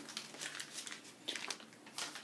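Faint rustling and crinkling of a small packaging sleeve being flipped open and an iPad Camera Connection Kit USB adapter slid out of it, with a few light crinkles in the middle.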